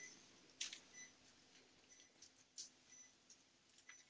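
Near silence: faint room tone with a few faint short clicks and soft short beeps.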